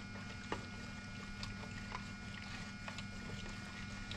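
Paint stick stirring paint and water together in a small plastic bucket: faint, irregular taps and scrapes of the stick against the bucket, over a steady low hum.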